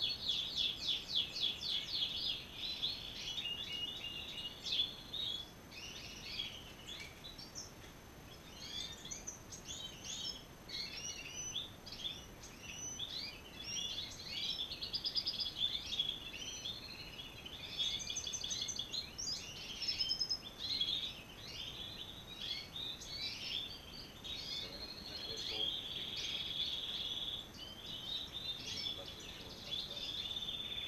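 A roomful of caged European goldfinches singing and twittering, many birds overlapping, with a fast trill at the start.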